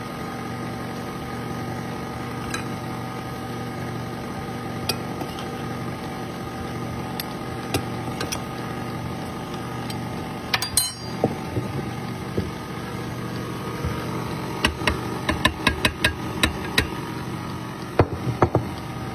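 KitchenAid stand mixer's motor running steadily, its flat beater working thick cake batter as the last of the flour is mixed in. Sharp metallic clicks and clinks come now and then, most often in the last few seconds.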